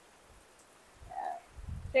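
Faint hurricane rain hiss, then a low rumble of wind buffeting the microphone in the last half second, with a brief murmur of a voice about a second in.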